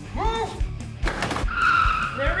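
Trailer music with a steady beat, with a short cry early on, then a burst of noise and a van's tires squealing in the second half.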